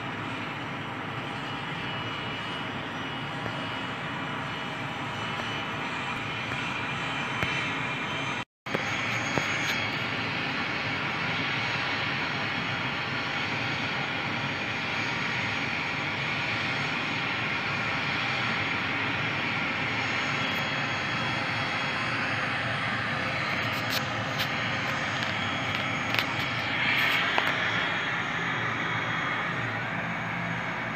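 ATR 72-600 turboprop engines (Pratt & Whitney PW127 series) running with a steady drone as the airliner begins to taxi. The sound cuts out completely for a moment about a third of the way in, then resumes slightly louder.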